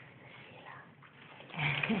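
Faint sounds from an excited pet dog. About one and a half seconds in, a much louder noise begins with the start of a woman's voice.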